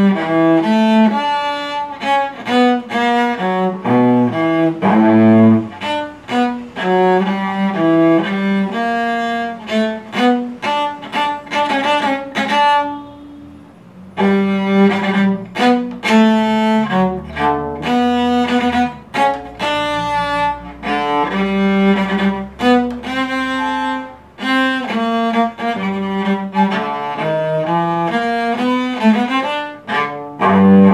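Solo cello played with the bow: a march tune in short, separated notes, with a brief pause near the middle before the melody resumes.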